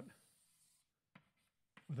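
Chalk scratching faintly on a blackboard as a small circle is drawn, for under a second, followed by a single short click.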